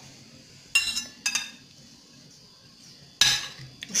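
Metal cutlery clinking against a plate while a banana pancake is cut open: two light clinks in the first second and a half, then a louder ringing clink about three seconds in.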